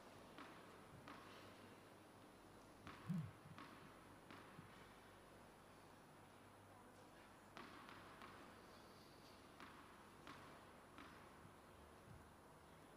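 Faint, repeated bounces of a tennis ball on the court, in short runs about two-thirds of a second apart, with one louder low thud about three seconds in.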